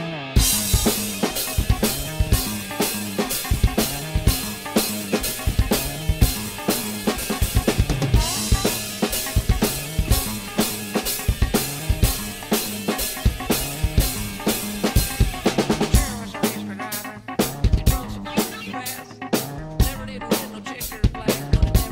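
Drum kit with Paiste cymbals played hard along to band backing music: a fast, busy stream of kick, snare and cymbal strikes over a pitched bass line.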